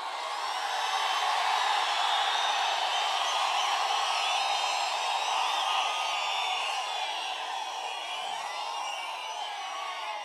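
A large crowd cheering and shouting without a break, swelling about a second in and easing slightly toward the end.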